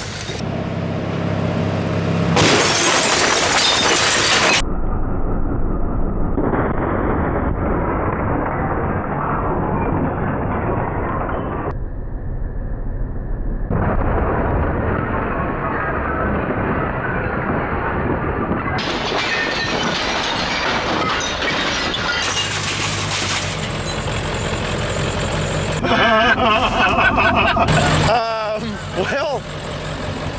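Ford F-350 with a 7.3 Powerstroke diesel driving into an old wooden console tube TV, with wood and glass breaking and debris clattering under the truck. The sound changes abruptly several times as the crash is shown again from different cuts, and voices come in near the end.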